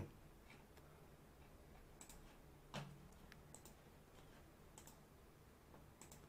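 Near silence with a few faint computer mouse clicks, some in quick pairs.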